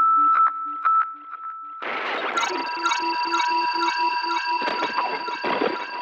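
Electronic title-sequence sounds from a synthesizer: a high beep that repeats and fades like an echo, then about two seconds in a noisy swell that opens into held synth tones over a fast, even pulse.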